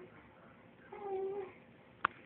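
A woman's brief, high whimper: one held tone about half a second long, made with her tongue held out for a tongue piercing.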